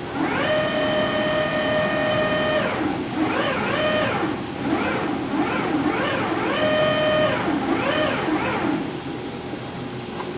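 Eagle CP60H pyramid roll bender rolling a metal angle through its rolls: a loud pitched whine that holds steady for about two seconds, then swoops up and down over and over. It dies away about a second before the end.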